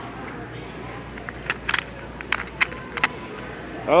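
A sweater being handled on a store rack: a cluster of light crinkly clicks and rustles between about one and three seconds in, over a steady store background.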